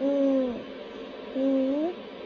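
A person's voice making two short wordless sounds: the first falls in pitch, and the second, about a second and a half in, rises at its end.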